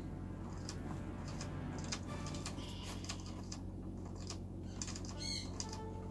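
Faint clicking of a rat's water-bottle nozzle as the rat drinks, the sipper going click, click, click in a quick, uneven run.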